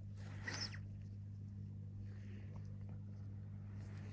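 Steady low electrical hum, with a short soft hiss like a breath about half a second in.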